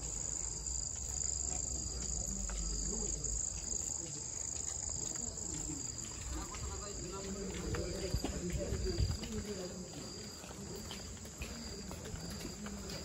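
Crickets chirring with a steady, high-pitched trill, with faint voices talking in the background about halfway through.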